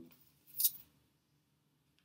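A single short swish about half a second in, of an oracle card being slid out and drawn from the deck; otherwise the room is near silent.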